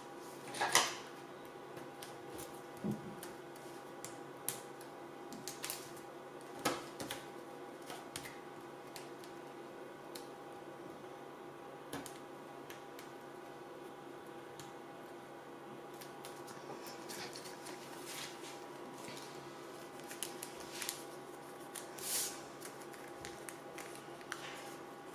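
Sporadic short rustles and taps of die-cut cardstock being handled, pressed and folded on a craft mat, the loudest about a second in, near seven seconds and near the end, over a steady faint hum.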